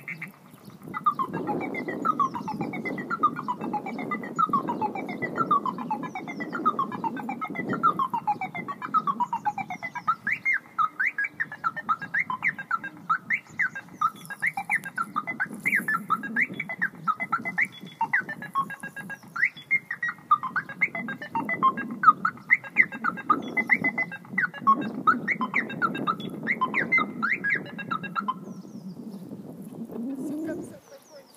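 Electronic car alarm siren on a BMW E34 5 Series sounding an odd, alien-like pattern: a falling sweep repeated about one and a half times a second, then quicker warbling up-and-down chirps from about ten seconds in. It cuts off shortly before the end.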